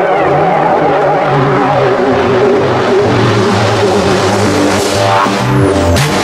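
Melodic techno in a breakdown: sustained droning synth tones and bass notes with the kick drum dropped out, and a sweep near the end.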